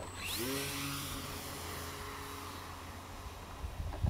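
Front-mounted electric motor and propeller of an EasyStar RC glider spooling up, its whine rising briefly in pitch, then running steadily as the glider climbs away and slowly getting quieter.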